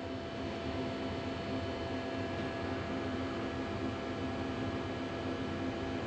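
Steady electrical hum and fan-like hiss from powered-up shop equipment, with several constant tones running through it and no change in level.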